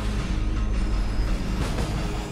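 Jet airliner's engines running at takeoff power as it speeds down the runway, a loud steady noise, with music underneath.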